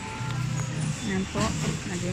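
Supermarket background noise with music in the background and a person's voice about a second in.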